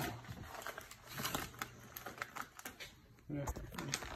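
Snack bag of potato sticks crinkling in the hand, a string of small irregular crackles. A low thump and handling noise come near the end.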